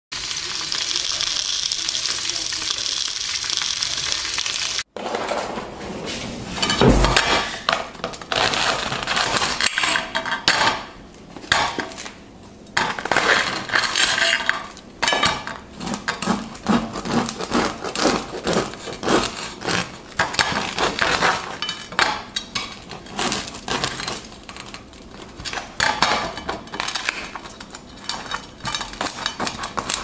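Fat sausages sizzling steadily in a frying pan for about five seconds. After a sudden cut come irregular knocks and clatter on a ceramic plate as a baguette is handled on it.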